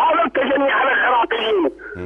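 A man talking over a telephone line in Iraqi Arabic. The voice sounds thin and narrow, like a phone call.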